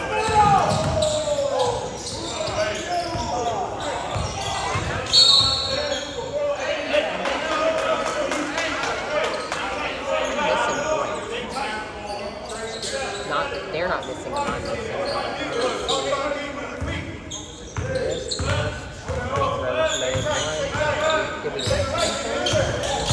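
A basketball being dribbled and bouncing on a hardwood gym floor, with indistinct shouting and chatter of players and onlookers echoing in the large gym.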